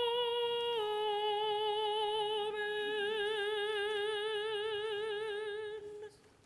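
A woman's solo voice singing a sustained note that steps down slightly about a second in to a long held note with wide vibrato, cut off just before the end.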